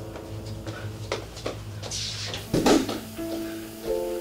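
Dark, suspenseful film score: a steady low drone with a few soft knocks, then a loud thump about two and a half seconds in. A held note comes in just after three seconds.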